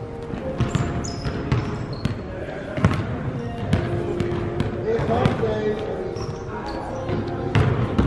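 Basketball being dribbled on a hardwood-style gym floor, with irregular bounces echoing in a large gymnasium and a few short, high sneaker squeaks.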